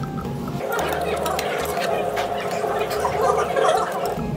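Indistinct murmur of voices with small clicks of metal chopsticks against dishes while eating.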